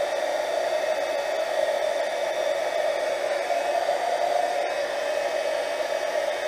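Embossing heat gun blowing steadily, a hair-dryer-like whir, as it melts embossing powder on puzzle pieces.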